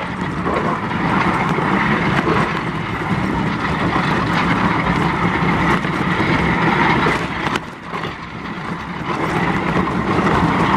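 Bobsleigh sliding at speed down an ice track, heard from inside the sled: a loud, steady rush of runners on ice and wind. The noise dips briefly about three-quarters of the way through.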